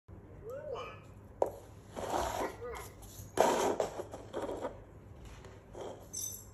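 EMO desk robot giving short rising-and-falling electronic chirps, with paper cups knocking and sliding on a tabletop: a sharp tap about a second and a half in and the loudest knock and scrape about three and a half seconds in.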